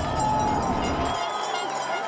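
Crowd noise with a babble of voices, its low rumble dropping away about a second in and the rest fading out.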